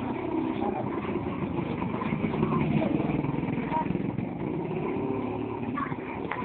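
Street traffic noise: a motor vehicle's engine running steadily, with people's voices in the background.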